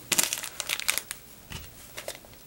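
Crinkling and crackling of something crinkly being handled, in quick bursts through the first second, followed by a soft knock about a second and a half in.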